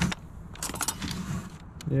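Metal cutlery clinking and rattling as a hand sorts through forks, spoons and knives in a plastic cutlery tray, with a quick run of clinks just under a second in.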